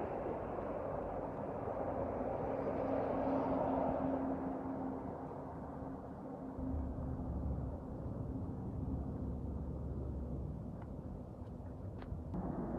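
Road traffic noise: a vehicle goes by, swelling over the first few seconds and easing off, with a faint steady hum under it. A low rumble comes in about halfway through and fades a few seconds later.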